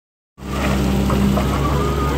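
Excavator's diesel engine running steadily, heard close up at the cab, with a faint crackle over it; the sound cuts in about a third of a second in.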